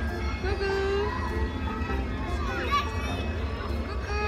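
People's voices talking outdoors, not clear enough for words to be made out, over a steady low rumble.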